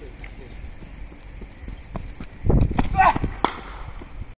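A cricket bowler's run-up footsteps: a quick series of heavy thuds, about four a second, starting about two and a half seconds in and loudest as the bowler reaches the camera.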